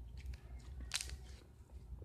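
Slime being squeezed and worked in the hands, making soft clicks and crackles, with one sharper pop about a second in.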